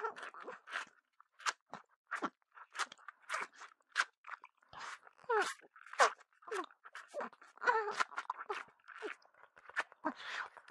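Close-miked wet mouth sounds: licking, sucking and lip smacks in short, irregular bursts, with a few brief vocal hums mixed in.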